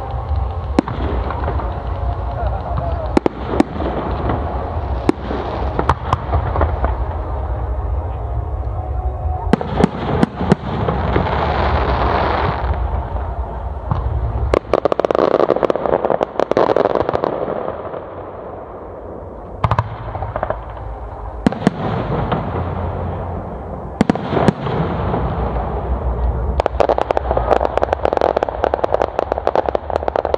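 Fireworks display: aerial shells bursting in repeated bangs, with long stretches of dense crackling between them and a quicker run of bangs near the end.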